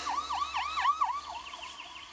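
A siren-like warbling tone, its pitch sweeping rapidly about five times a second, fading out over two seconds.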